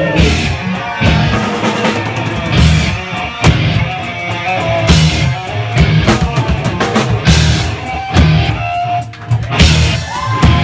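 Punk rock band playing live with no vocals: a drum kit hitting hard with frequent cymbal crashes over guitars and bass.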